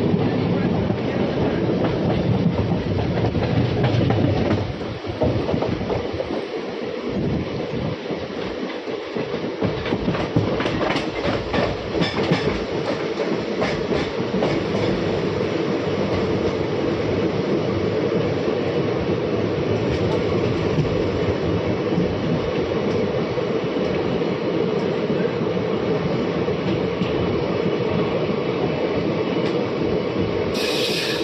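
Passenger train running on the line, heard from on board: a steady rumble of the coach with wheels clicking over rail joints. The rumble is heaviest for the first few seconds and then eases, and a run of clicks comes about ten to fifteen seconds in.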